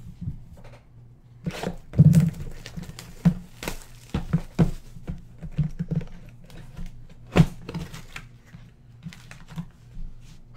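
Plastic wrap crinkling and tearing as it comes off a cardboard trading-card box, with scattered taps and knocks from the box being handled and opened. A louder cluster comes about two seconds in, and a sharp knock a little after seven seconds.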